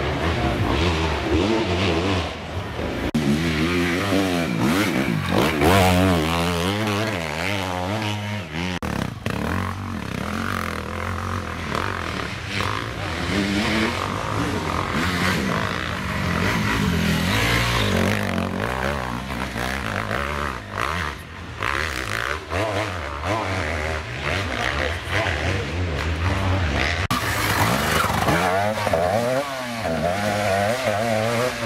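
Enduro dirt-bike engines revving hard on a steep climb. The pitch rises and falls over and over as the throttle is worked, and the bikes are loudest a few seconds in and again near the end.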